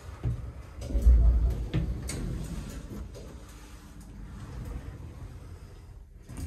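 Clunks and knocks from a lift car and its door mechanism, with a heavy low thump about a second in, then a quieter steady rumble while the doors stay shut before beginning to part.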